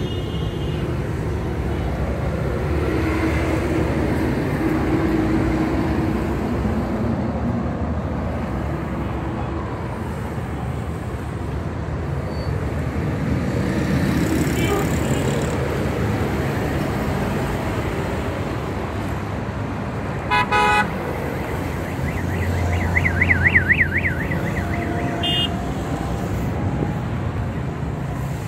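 Steady street traffic noise from passing and idling vehicles. A short car horn toot comes about twenty seconds in, and a warbling high tone follows a couple of seconds later.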